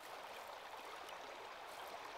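Faint, steady rushing noise like running water, rising in at the start.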